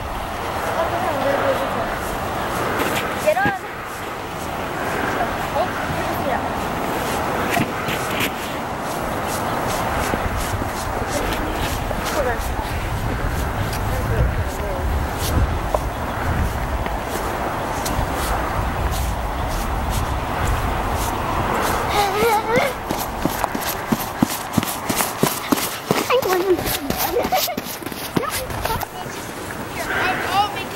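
Children's voices shouting and calling in the background, with no clear words, over a steady low rumble. A run of sharp crunching clicks comes near the end.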